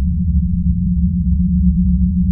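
A steady low-pitched hum with nothing in the higher pitches, unchanging throughout.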